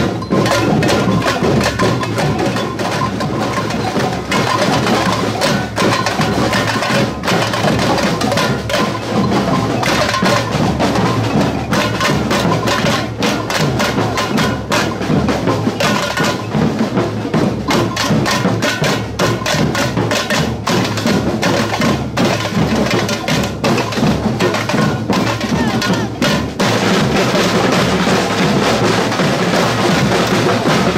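Samba street drum band (batucada) playing a continuous, busy groove: stick-beaten bass and snare drums with clacking hand percussion on top. The band gets fuller and steadier for the last few seconds.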